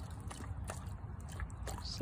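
Husky lapping water from a shallow pool, drinking thirstily: a run of irregular soft wet clicks and small splashes from her tongue.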